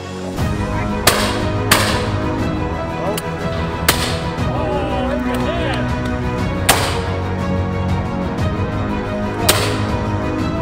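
Shotguns firing at driven game birds: about five sharp shots, unevenly spaced, the first two about half a second apart, over background music.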